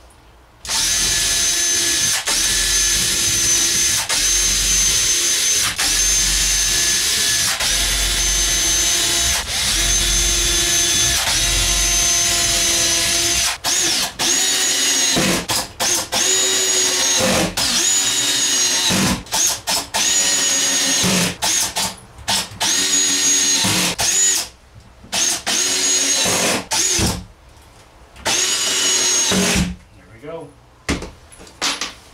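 Cordless drill/driver running in repeated runs as screws are driven into a wooden cabinet rail, its motor whine rising at each start. For the first half it runs almost without stopping, with short breaks about every two seconds; later it comes in shorter runs with pauses between.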